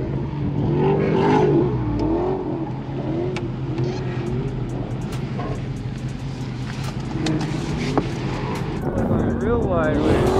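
The Charger Scat Pack's 392 (6.4-litre HEMI) V8 running with a steady low rumble inside the cabin, changing about two seconds in. Over it a song with a singing voice plays from the car stereo.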